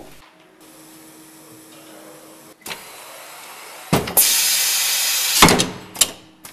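Automated steering-rack test bench handling gear at work: a faint steady motor hum with one steady tone, then a click and a knock. About four seconds in comes a loud high hiss lasting about a second and a half, cut off by a sharp clack.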